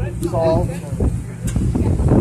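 Steady low drone of a boat engine, with people's voices talking over it about half a second in.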